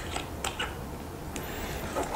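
Light clicks and handling noise of a watch's screw-on metal case back being threaded onto the case by hand, a few small ticks in the first half-second and one more faint one later, over a low steady hum.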